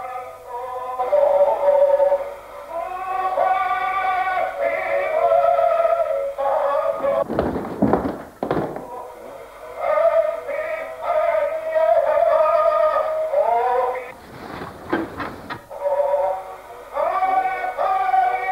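A high solo voice sings a slow, wavering melody with vibrato, in the thin, narrow sound of an old recording. It breaks off briefly twice before going on.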